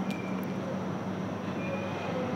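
A steady low background hum over even noise, with a couple of faint clicks early on.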